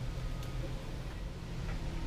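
Steady low hum of electric fans running, an evaporative cooler and a small floor fan, with one faint tick about half a second in.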